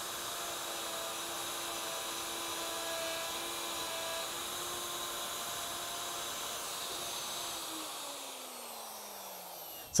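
A plunge router fitted with a half-inch spiral bit runs steadily with a high whine. It is then switched off, and its motor winds down with a falling pitch over the last two seconds or so.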